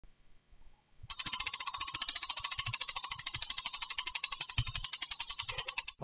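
Logo-intro sound effect: a rapid, even train of ticking clicks, more than ten a second, like a fast ratchet. It starts about a second in and stops just before speech begins.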